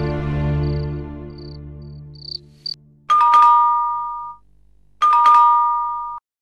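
Background music fading out, with short high chirps repeating about once a second, then an electronic doorbell rung twice, each press a two-note ding-dong that rings on for about a second.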